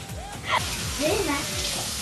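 Kitchen faucet running into the sink, a steady hiss starting about half a second in, over background music with a beat and a brief voice.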